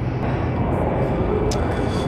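Steady low rumble of grocery-store background noise, with a single short click about a second and a half in.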